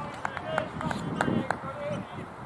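Indistinct voices of cricketers calling to each other across an open field, with several sharp clicks and short high chirps.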